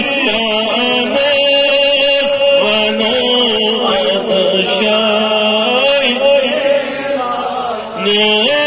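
A man singing a Kashmiri naat, a devotional poem in praise of the Prophet, solo into a microphone, in long held notes with wavering ornaments. The voice dips briefly near the end.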